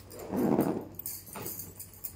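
Fabric storage bag being handled and zipped shut: a rustle of the cloth and zipper a little way in, then a few faint clicks and rustles.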